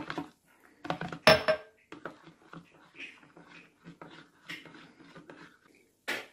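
A spoon stirring honey into pomegranate juice in a plastic jug: a few sharp knocks of utensil on jug and counter in the first second and a half, the loudest about a second in, then quieter clinks and handling noises.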